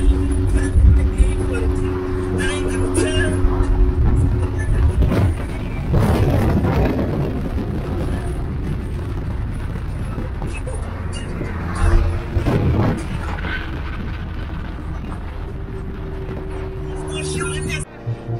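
Road and engine noise inside a car cruising at highway speed, with a steady low drone. There are two louder swells of noise about six and twelve seconds in, and voices in the cabin underneath.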